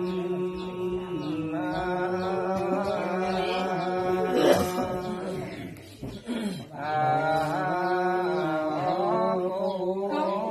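Voices chanting ritual verses in long, held notes that step slowly in pitch. A short loud noise cuts in past the middle, the chanting thins out briefly, then resumes.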